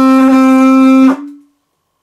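A curved animal horn blown like a trumpet, holding one steady note that stops a little over a second in.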